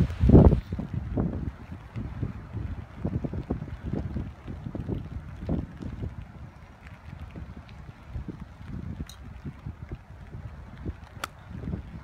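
Wind buffeting the microphone in uneven gusts, a steady low rumble. Near the end comes a single sharp click: a golf iron striking the ball.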